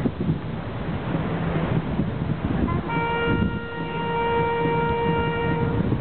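A ceremonial brass horn call. After a short higher grace note about three seconds in, it holds one long steady note for nearly three seconds, and the next note begins at the very end. A low background rumble runs underneath.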